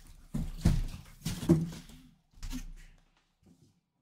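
A cardboard helmet box being turned around and set down on a table: a few scrapes and knocks in the first three seconds.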